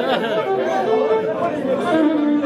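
Several people singing a song together, holding long notes, with chatter around them.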